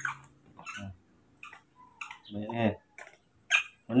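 A baby monkey giving a few short, high squeaks, with a person's brief low hum about halfway.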